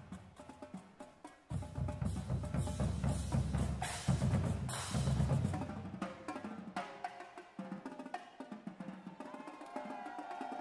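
High school marching drumline playing on snare drums, tenor drums and bass drums. From about a second and a half in to about five and a half seconds comes a dense run of rapid strokes over deep bass-drum hits. After that come lighter, sparser sharp strokes.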